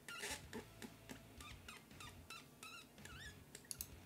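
Faint clicks of a computer mouse, with a few short, high squeaky chirps in the second half.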